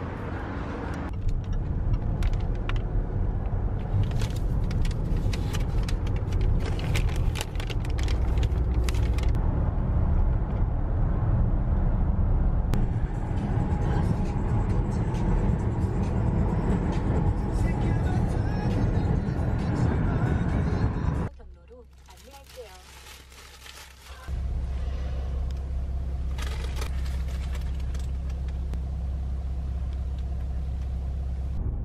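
Steady low rumble of road and engine noise inside a moving car, with a pop song with vocals playing over it. The rumble drops away for about three seconds a little past two-thirds of the way through.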